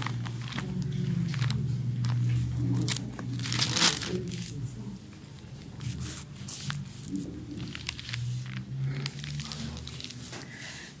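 Thin Bible pages being turned and leafed through in search of a passage, a run of papery rustles and crinkles over a steady low hum.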